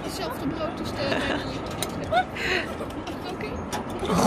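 Indistinct chatter of diners in the background, with a few short, sharp clicks of a metal fork on a ceramic plate.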